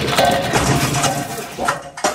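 A tablecloth yanked off a set table, sending glasses, plastic condiment bottles, a plate and a potted plant clattering and crashing, with several sharp strikes through a dense jumble of noise.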